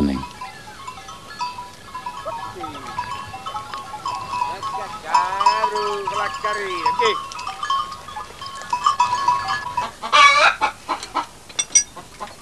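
Farmyard animal sounds: goats bleating in the middle and a rooster crowing about ten seconds in, over a background of many small chirps.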